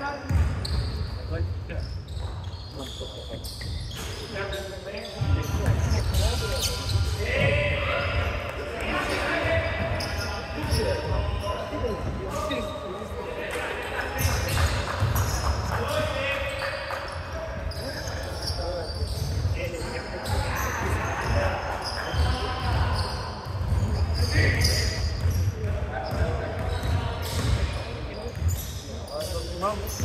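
A basketball bouncing repeatedly on a wooden gym floor during play, with players' voices calling out over it.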